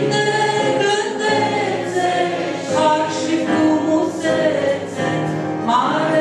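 A woman singing a Romanian gospel hymn into a handheld microphone, with held and gliding notes.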